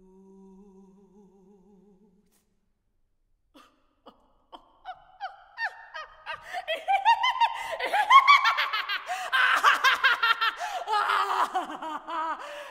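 A solo soprano voice performing scored vocal gestures: a soft, low sung tone with a wavering vibrato, a short silence, then scattered clicks and breaths that build into rapid, loud bursts of laughter rising in pitch.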